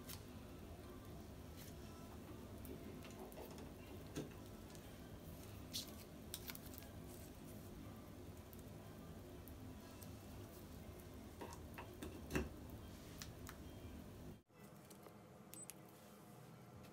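Near silence: room tone with a low hum and a few faint scattered clicks. Near the end the background drops out abruptly and resumes slightly different, like an edit cut.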